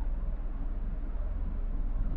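Steady background hiss with a low electrical hum from the recording microphone; nothing else sounds.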